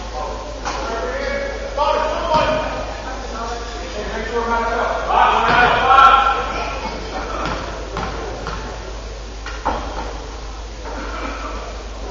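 Voices shouting and calling out in a gymnasium, echoing in the large hall and loudest about five to six seconds in, with a few sharp knocks scattered through.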